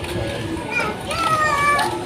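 Children's voices, with one child calling out in a high, drawn-out voice about a second in.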